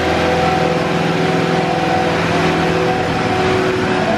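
Caterpillar compact track loader's diesel engine running at a steady speed, with an even, unchanging pitch.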